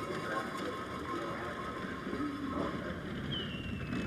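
A two-woman bobsleigh running on the iced start stretch of the track, giving a steady rushing noise from the runners on the ice. Near the end, a thin whistle falls in pitch.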